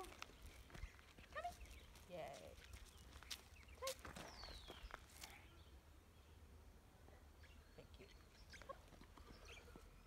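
Near silence: faint outdoor quiet with a few short bird chirps and light clicks in the first half, then only a low steady hum.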